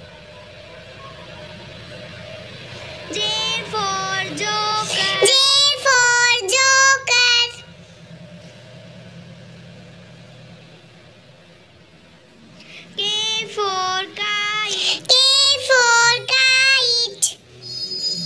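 A child's high voice singing two short phrases of quick, stepping notes, one about three seconds in and one about thirteen seconds in, with a faint background between them.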